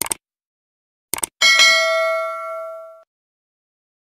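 Subscribe-button animation sound effects: a click, then a quick double click about a second in, followed by a bright notification-bell ding that rings for about a second and a half and cuts off suddenly.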